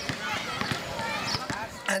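Basketballs bouncing on an outdoor court: a string of irregular dull thuds, about six or seven in two seconds, under faint background voices.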